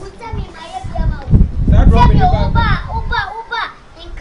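Children's voices calling and talking over each other, with a loud low rumble that swells about a second in and fades before the end.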